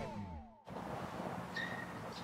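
The last notes of guitar background music die away, then a brief moment of silence. After that comes faint, steady outdoor background noise.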